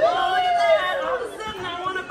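A voice drawing out a long, wavering vocal cry that rises in pitch and then sinks slowly, ringing through a theatre's sound system, like a teasing "ooooh".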